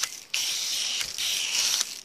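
Hose-end foam gun spraying car wash soap onto a car's side panel: a hissing, spattering spray that drops out briefly just after it starts, then runs on steadily.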